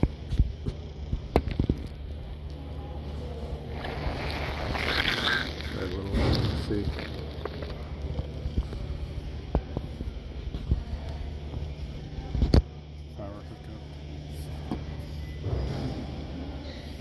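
Large indoor hall ambience: a steady low hum with murmured voices in the background, louder for a few seconds in the middle. Several sharp knocks come through, the loudest about twelve and a half seconds in, after which the hum drops away.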